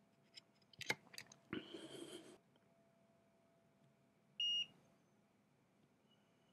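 Light clicks of test probes being set on a circuit board, a rough crackly burst about a second long, then one short, clean beep from a multimeter's continuity tester about four and a half seconds in, signalling that the probes are touching connected points.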